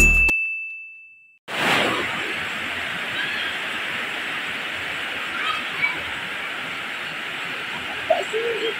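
A single high chime sound effect held for about a second as intro music fades, then after a short gap a steady rain starts, falling on leaves and the ground.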